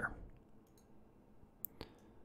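Two quick computer mouse clicks near the end, amid near silence after a voice trails off at the start.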